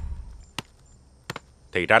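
A loud sound fades out, then come three sharp clicks about two-thirds of a second apart, and a man's voice starts near the end.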